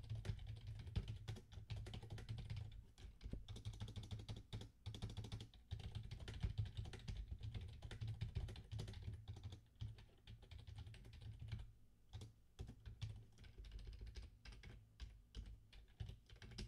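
Typing on a computer keyboard: faint, irregular runs of key clicks, with a brief lull about two-thirds of the way through.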